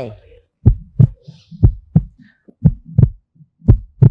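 Heartbeat sound effect: pairs of low thumps in a lub-dub rhythm, about one pair a second, played as a suspense cue while the contestants decide whether to press their buttons.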